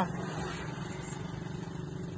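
Steady running noise of a car heard from inside its cabin, a low even hum with no sudden events.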